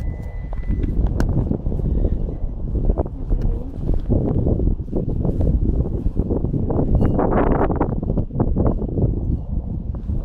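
Turf and soil rustling and thudding as a dug turf plug is pressed back into its hole by hand and trodden down with a boot, with wind buffeting the microphone.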